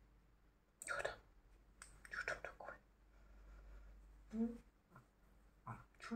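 Soft whispering in a few short, quiet bursts, with one brief voiced sound about four and a half seconds in.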